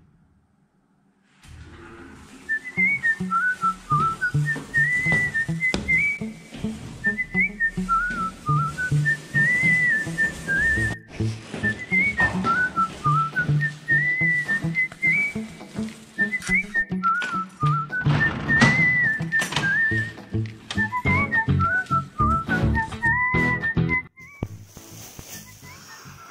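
Background music with a whistled melody over a steady, bouncing bass line. It starts about a second and a half in and drops in level near the end.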